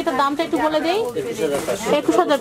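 Speech: a voice talking without a break.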